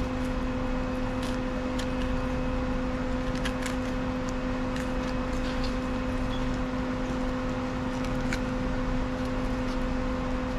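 A steady low machine hum, one constant drone with a higher tone above it, under faint, scattered clicks and scrapes of a knife filleting a fish on a stone cutting board.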